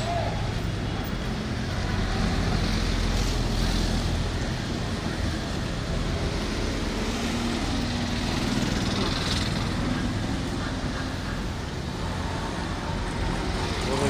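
Steady street traffic: passing engines and road noise from cars and three-wheelers on a city road.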